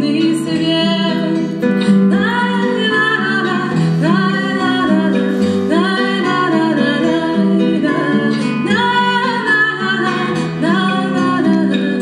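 A woman singing a lullaby in Russian, accompanying herself on acoustic guitar.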